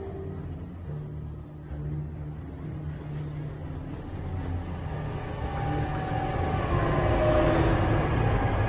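Ominous low droning underscore that swells in loudness toward the end, with held higher tones joining about halfway through.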